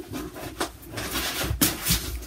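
Rummaging through an overfull pile of stitching projects: rustling and rubbing with several sharp knocks as items are shifted and fall over, the loudest near the end.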